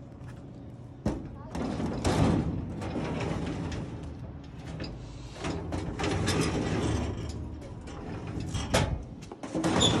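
Drawers of an old steel filing cabinet being slid out and pushed back on their metal runners: rumbling metal slides lasting a second or two, with sharp knocks about a second in and near the end.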